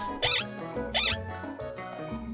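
Cheerful children's background music with two quick rising squeaky cartoon sound effects, about half a second apart.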